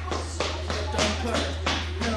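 Barber's scissors snipping hair in quick short cuts, about six snips at roughly three a second, over a steady low hum.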